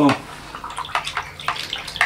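Thin wooden stick stirring crude vegetable oil and methoxide in a plastic measuring jug to make biodiesel: liquid swishing with irregular clicks of the stick against the jug.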